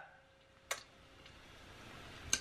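Near silence in a small room, broken once by a short, sharp click less than a second in.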